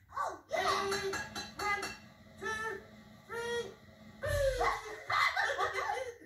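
Rag-doll puppet characters chattering in wordless gibberish and giggling, with a short low thud about four seconds in, heard through a TV speaker.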